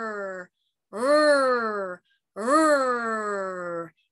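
A woman's voice making drawn-out "rrrr" sounds in imitation of a race car engine revving, each rising and then sliding down in pitch. One ends about half a second in, then two more follow with short gaps.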